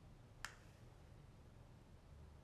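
Near silence broken once, about half a second in, by a single sharp click from the flat hair iron being handled, its plates clacking together.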